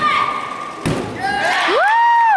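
A gymnast's vault landing onto a thick landing mat: one dull thud about a second in. A long high cheer rises and holds near the end.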